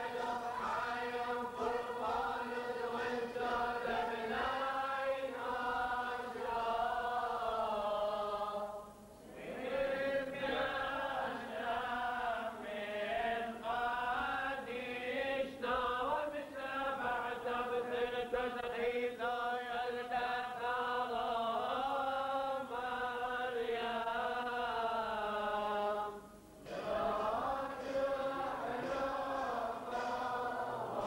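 A group of men chanting a Syriac Catholic liturgical hymn together, in long sung phrases. The chanting breaks off briefly about nine seconds in and again near the end, then resumes.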